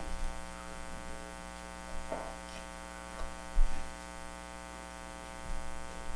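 Steady electrical mains hum with a stack of overtones, carried through the sound system, with a soft thump about three and a half seconds in and a few faint rustles.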